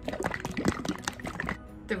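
A capped pint jar of thick pottery glaze shaken hard close to the microphone: the glaze sloshes and knocks inside the plastic jar with a "gloopy glop sound", a run of irregular splashy knocks that stops about one and a half seconds in. The sound shows the settled glaze being mixed back together.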